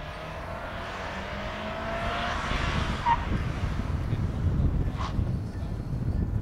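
First-generation Subaru Forester driving a skidpan cone course, its engine note rising over the first two seconds while tyre noise swells as it passes, with two short tyre chirps about three and five seconds in. A low rumble of wind on the microphone runs underneath.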